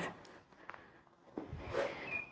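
A kicking foot is set back down on a rubber gym floor with a soft thud about one and a half seconds in, followed by faint rustling as she settles back into stance after a front kick.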